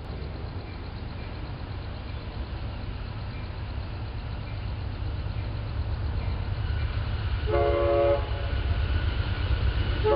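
Low diesel rumble of an approaching train, growing louder, with a chord blast from a multi-chime locomotive air horn about seven and a half seconds in and another blast starting at the very end.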